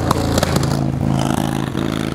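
A motor vehicle's engine running steadily at a low, even pitch, as from traffic on a nearby road.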